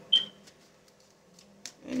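A quiet pause in a small room, broken just after the start by one short, sharp sound with a brief high squeak in it, and by a faint click shortly before speech resumes.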